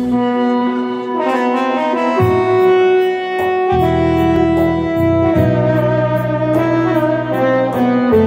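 Instrumental intro of a Turkish song on an arranger keyboard, with an oud: a melody in long held notes of about a second each over bass notes, and a steady beat ticking about three times a second.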